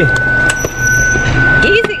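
Car interior sound: a low steady hum under a continuous high-pitched thin tone, with a sharp click about half a second in.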